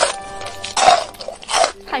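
Crisp crunching bites into a fried chicken drumstick, three crunches in quick succession, over background music.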